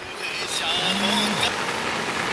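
Steady noise of rain falling, with a voice calling out briefly in the middle.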